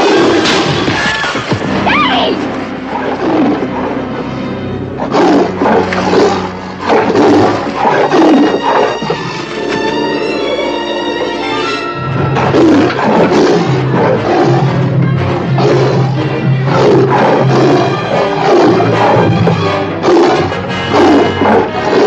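Tiger roaring again and again over a loud orchestral score.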